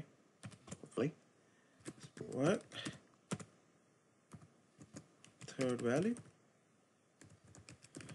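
Typing on a computer keyboard: irregular key clicks in short clusters. A brief murmured voice comes in twice.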